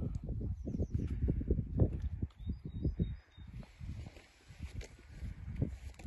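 Wind buffeting the microphone in irregular low gusts, easing off briefly a little past halfway.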